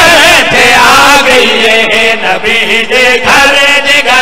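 Several men chanting a devotional qasida together into handheld microphones, loud and continuous, with the lines of the voices gliding up and down in pitch.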